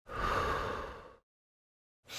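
A single person's breath, about a second long, fading out, then silence: one of the evenly paced breaths that mark the breathing rhythm of an abdominal crunch.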